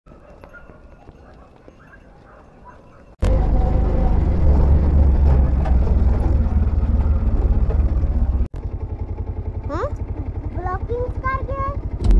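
A Bajaj Pulsar 125 motorcycle, single-cylinder: after about three faint seconds, loud engine and wind rumble while riding, which cuts off suddenly; then the engine idles with a fast, even pulsing while high voices speak over it.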